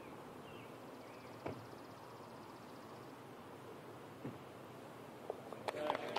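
Hushed outdoor golf-green ambience with a faint high buzz, broken by a single soft click about a second and a half in as a putter strikes a golf ball.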